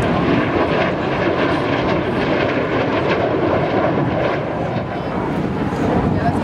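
Jet engine of a swept-wing MiG jet fighter flying a display pass: a loud, steady rush of jet noise that dips slightly about five seconds in.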